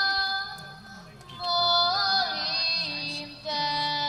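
A woman singing a slow Serbian song live through a concert sound system, holding long notes. One note fades out about a second in, a new phrase rises in just after with a bending note, and another long held note begins near the end.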